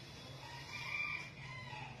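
A rooster crowing once: a single drawn-out call of about a second, starting near the middle.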